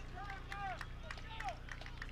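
Faint, distant shouts of players calling out on the field, several short calls, over a low steady hum.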